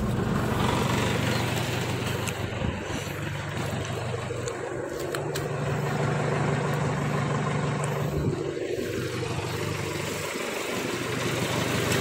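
Isuzu Panther's four-cylinder diesel engine idling steadily just after a start, running evenly, which the seller calls a good, healthy engine.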